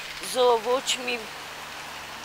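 A woman speaking for about a second, then a steady background hiss.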